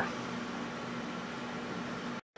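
Steady low hum with an even hiss, unchanging throughout: background machine or room noise.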